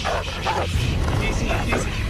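A large dog barking several times in short, sharp barks over dramatic film music.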